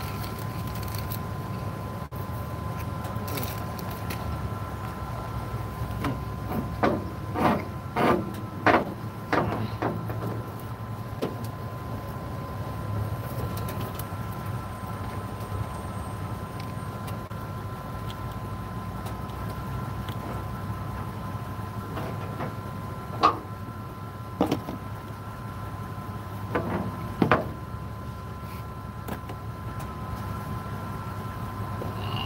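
Steady mechanical hum with a constant thin whine, like an idling vehicle engine. A quick run of sharp knocks comes about six to ten seconds in, and a few single knocks follow near the end.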